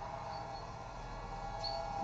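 Street ambience from a film soundtrack: a steady background hum with two short, faint high chirps, one early and one near the end.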